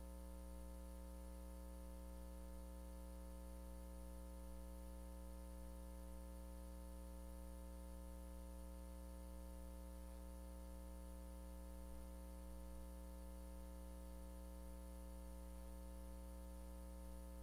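Steady electrical mains hum with a faint hiss on the audio feed, unchanging and with no other sound.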